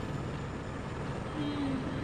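Helicopter cabin noise: the steady rush of the engine and rotor heard from inside the cabin in flight.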